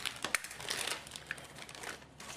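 Thin plastic piping bag crinkling as it is handled and cut down with a knife on a cutting board, in irregular crackles and small clicks.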